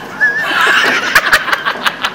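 Crowd laughter bursting out about half a second in and carrying on loud, with performers and audience laughing together.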